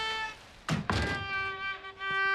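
Two heavy thunks in quick succession, about two-thirds of a second in, against violin music with held notes.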